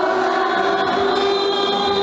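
A choir singing a hymn in long, held notes.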